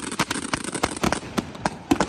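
Fireworks display: a dense barrage of rapid bangs and reports from bursting fireworks, thinning out for a moment in the second half.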